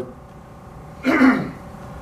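A man coughs once into a handheld microphone about a second in, a short burst that drops in pitch.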